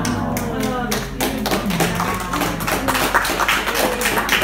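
Audience clapping, rapid and irregular, growing louder toward the end, with a few voices calling out at the start.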